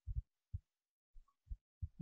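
Faint, dull low thumps, about six of them at irregular intervals, with quiet between them.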